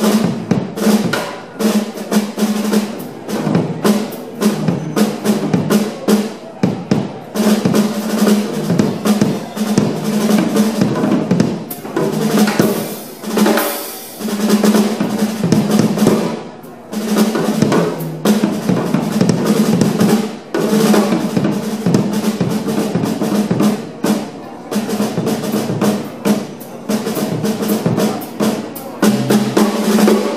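Live jazz trio of drum kit, electric bass and electric guitar playing a swing tune, with the drum kit loudest: busy snare and bass-drum fills over a walking bass line.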